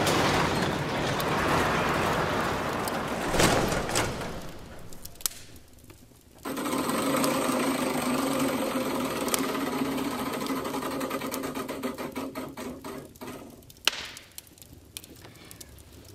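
Prize wheel of fortune spinning: a rushing noise fades out in the first few seconds. Then a rapid run of pointer ticks over a steady hum slows and spreads out until the wheel stops near the end.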